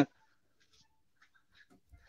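Near silence on an online call's audio, with a few faint, brief specks of sound.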